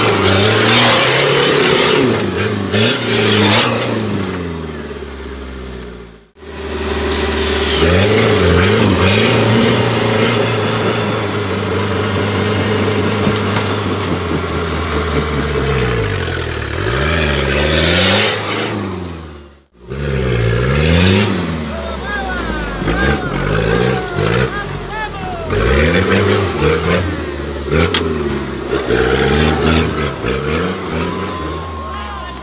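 Off-road competition buggy's engine revving hard under load while climbing out of a dirt trench, its pitch surging up and dropping back again and again. The sound cuts out abruptly twice, near 6 seconds and near 20 seconds in.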